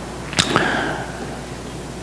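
Quiet room tone picked up by a speaker's headset microphone during a pause in speech, with one short, sharp noise about half a second in.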